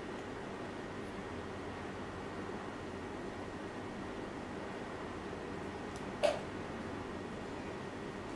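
Steady low background hum, with one short sharp click a little past six seconds in.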